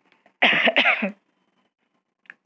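A woman coughs, a quick run of about three coughs lasting under a second, beginning about half a second in.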